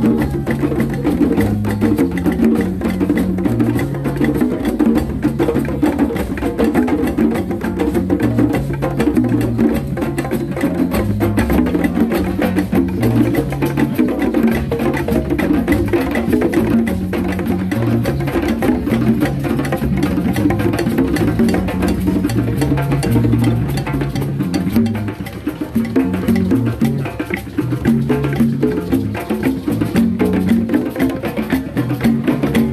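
Drum circle of many hand drums, including congas and djembes, plus timbales, playing a dense, driving rhythm together with sharp, wood-block-like hits on top. An electric bass plays a moving line of low notes underneath.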